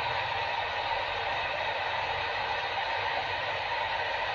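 Steady noise inside a car cabin: a low engine and road hum under an even hiss.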